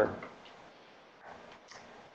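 A man's last spoken word fades, then a pause of near-quiet room tone with a couple of faint, soft ticks in the second half.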